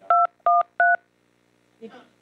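Telephone keypad (DTMF) tones: three short, loud two-note beeps about a third of a second apart, each a different key, as a conference phone line keys in a meeting access code. A voice speaks briefly near the end.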